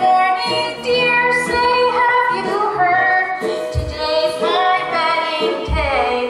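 A woman singing a musical-theatre song solo over musical accompaniment.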